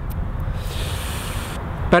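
Steady low outdoor background noise, with a hiss lasting about a second in the middle.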